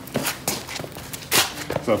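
A few short scuffs and taps of shoes stepping on pavement and of bodies and jackets bumping in a close-range stepping drill, the loudest about a second and a half in.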